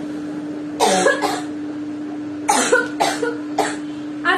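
A woman coughing in two bouts: a quick cluster of coughs about a second in, then three more from about two and a half seconds. The cough lingers from an illness she has not yet recovered from, and it comes on when she talks a lot.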